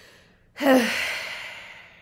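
A woman sighing: a faint breath in, then a long breathy exhale about half a second in. It is voiced for a moment at the start and fades away over about a second and a half.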